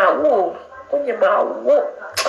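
A woman crying: a few short, wavering, whimpering sobs, the first one falling in pitch, then a quicker run of them about a second in.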